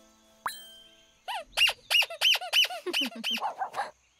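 Cartoon squeaky dog toy squeezed about seven times in quick succession, each squeak rising then falling in pitch, used as bait to lure the dog. A short rising swish comes about half a second in, and softer, lower falling squeaks come near the end.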